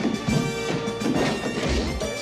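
Song accompaniment music between sung lines of an animated film, with cartoon crash and clatter sound effects: several sudden hits and a heavy low thud near the end.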